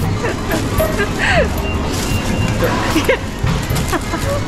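Busy supermarket background noise with scattered faint voices and music.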